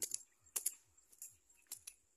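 A small hand blade digging and chopping into dry soil and roots, giving several short sharp clicks and scrapes.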